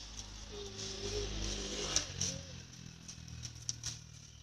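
A motor vehicle's engine passing by, its hum swelling to a peak about a second or two in and then fading, with a few light clicks.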